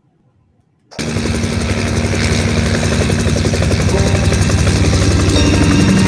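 Light helicopter, an MD 500-type, hovering: its rotor beats rapidly over the engine's steady drone. The sound cuts in suddenly about a second in, and music begins to come in near the end.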